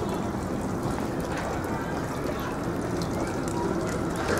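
Water running steadily from the spout into a shrine's stone purification basin (temizuya).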